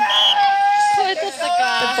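A person's loud, drawn-out wordless vocal cry close by, held on one pitch for about half a second, then a second shorter call near the end.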